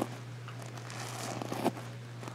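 Faint rustling of reversible flip sequins on a pillow cover being brushed flat by hand, with a small click near the end.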